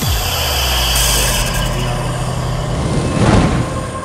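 Dramatic sound effect for a magical transformation: a deep rumble with steady low drones and hiss starts suddenly, then swells to a loud whoosh about three seconds in.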